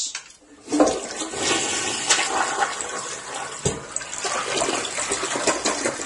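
Toilet flushing: water starts rushing about a second in and keeps draining steadily through the bowl, a sign the clog has been cleared by the auger. A single knock sounds partway through.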